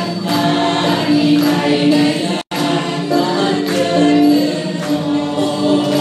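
A large crowd singing together with rhythmic hand clapping. The sound cuts out completely for a split second about two and a half seconds in.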